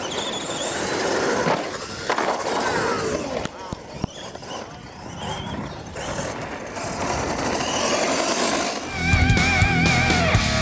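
Radio-controlled monster trucks racing on a dirt track, their motors whining up and down in pitch as they accelerate and slow. About a second before the end, rock music with heavy bass cuts in.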